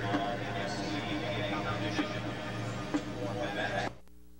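Crowd noise in a large indoor stadium, cheering and whooping as a marching band takes the field, with sharp taps about once a second; it cuts off abruptly near the end.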